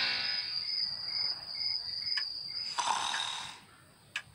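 Cartoon soundtrack night ambience: short, evenly spaced cricket chirps, about two a second, under the fading last note of the theme music. About three seconds in comes a louder breathy rush.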